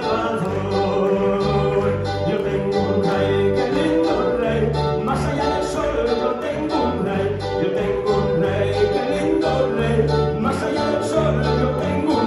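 Live worship band music through the PA: electric keyboard and bass guitar playing a steady song with held bass notes, while a man sings into a microphone.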